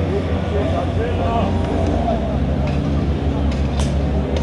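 Outboard motorboat engine running at a steady low drone, with people's voices talking and calling indistinctly over it.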